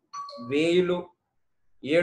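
A man speaking Telugu, with a short electronic chime, a steady tone held about half a second, sounding at the start under his voice.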